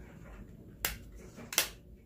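Two short, sharp clicks about three-quarters of a second apart, the second louder.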